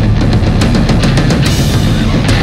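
Instrumental stoner/sludge metal: heavy guitars and bass over a drum kit, with a quick run of drum hits in the middle and a cymbal crash about one and a half seconds in.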